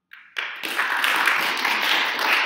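Audience applauding, starting suddenly about a third of a second in and going on steadily.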